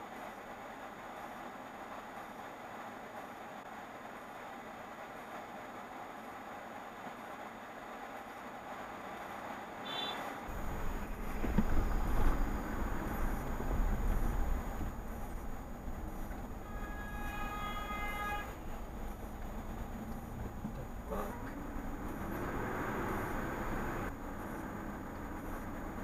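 Road and engine noise of a moving car picked up by a dash cam: a faint steady hiss for the first ten seconds, then a much louder low rumble, strongest a little past halfway. About seventeen seconds in, a steady pitched tone sounds for about a second and a half.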